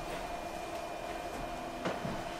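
A steady low hum with a few faint pitched tones, like room equipment, and a single soft thump near the end.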